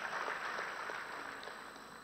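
Faint, even noise from a large seated audience in a hall, fading slowly during a pause in the speech.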